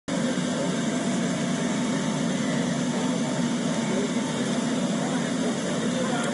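Steady machinery noise from an oil and gas processing plant: a constant low drone with a hiss above it that does not change.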